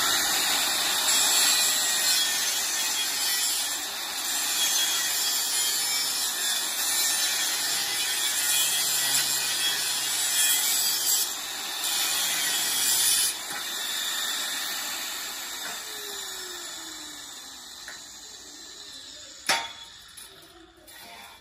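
Handheld electric angle grinder grinding on a steel pipe: a loud, steady, hissing grind. About 13 seconds in it eases off and the noise fades away, with a single click near the end.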